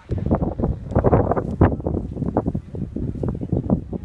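Wind buffeting a phone's microphone in irregular gusts, a loud rumbling rush that rises and falls.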